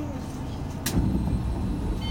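Cabin ambience of a Tama Monorail car standing at a station: a steady low rumble with voices nearby, a sharp click a little before the middle, then the low rumble grows louder.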